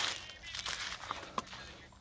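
Footsteps crunching and rustling over dry leaves and wood-chip mulch, with light scattered crackles and one sharp click about 1.4 seconds in.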